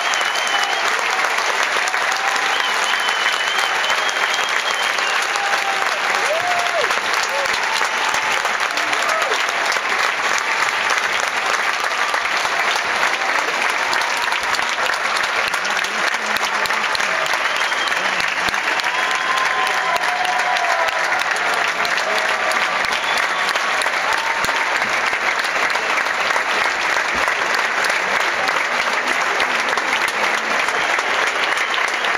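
Large theatre audience applauding steadily, with a few voices calling out above the clapping.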